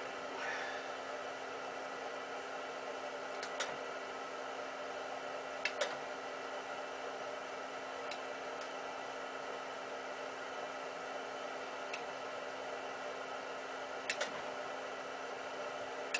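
A steady mechanical hum in a small room, with a few light clicks from hand-tool work on a light fixture's wiring.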